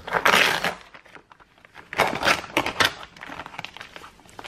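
Plastic film being peeled off a clear plastic tray of raw chicken, with the thin plastic tray flexing under the hands: a burst of plastic noise at the start and another cluster about two seconds in.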